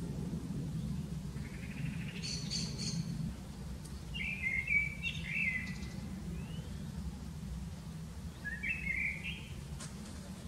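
Birds chirping, with a few short calls about two, five and nine seconds in, over a steady low hum.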